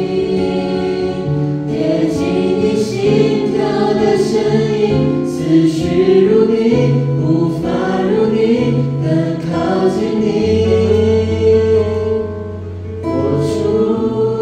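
A small mixed group of young men and women singing a Chinese worship song together, one woman's voice carried by a handheld microphone, over a soft instrumental accompaniment with a low held note in the last few seconds.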